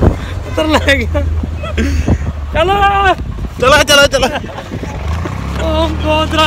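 Men's loud, drawn-out voices and laughter, with no clear words, over the steady low drone of a moving vehicle.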